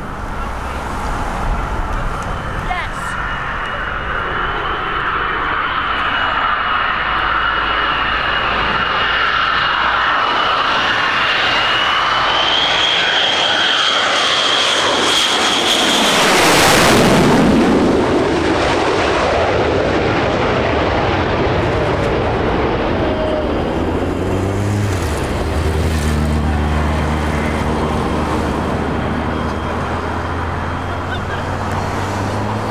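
Lockheed Martin F-22 Raptor's twin Pratt & Whitney F119 turbofan engines on landing approach. A high whine builds as the jet nears, and the jet noise sweeps down in pitch as it passes low overhead about halfway through, loudest there, then fades to a rumble. A low steady hum comes in near the end.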